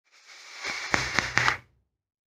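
A drag on a vape's rebuildable tank atomizer: air hissing through the tank while the coil fires, with a few sharp crackles of e-liquid popping on the hot coil. It builds for about a second and a half, then cuts off suddenly.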